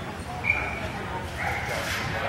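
A dog barking in short high yips, one sharp yip about half a second in and a longer one near the end.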